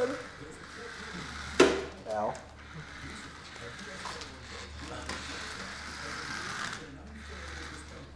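Remote-control toy car's small electric motor and gears whirring as the car strains while a cat holds it back, with a sharp knock about one and a half seconds in.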